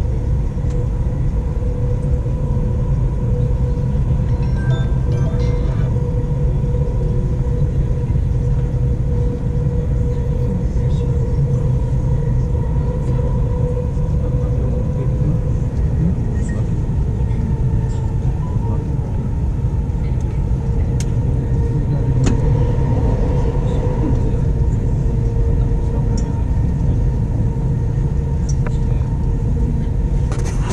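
Inside a moving Dubai Metro train car: a steady low rumble of the train running along the track, with a constant whine over it.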